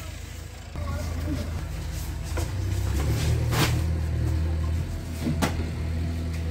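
A motor vehicle engine runs with a steady low hum that starts about a second in, its pitch rising and falling briefly near the middle. Three sharp knocks fall in the second half.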